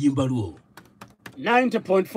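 Computer keyboard keys being tapped: a quick run of light clicks a little before the middle, in a short gap between speech.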